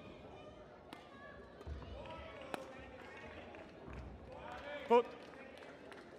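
Badminton rally: a few sharp racket strikes on the shuttlecock and low thuds of footwork on the court mat. Near the end comes one brief, loud, high-pitched squeal as the point ends, with faint hall chatter underneath.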